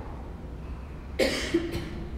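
A person coughing: a sharp cough a little over a second in, followed quickly by a second, shorter one, over a steady low hum of room tone.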